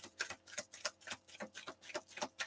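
Tarot cards being shuffled by hand: a quick, irregular run of short card clicks, about five or six a second.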